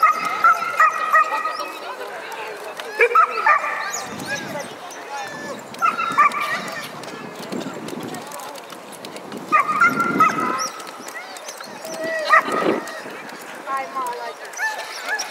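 Huskies yipping and barking in about five short, high-pitched bursts a few seconds apart, over the murmur of a crowd.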